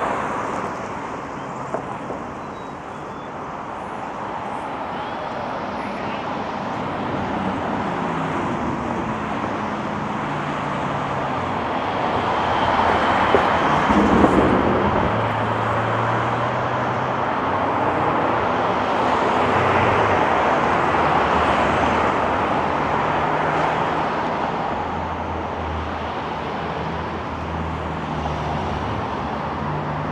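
Road traffic: a steady stream of cars passing one after another, with engine hum rising and falling as they go by. It is loudest around halfway through.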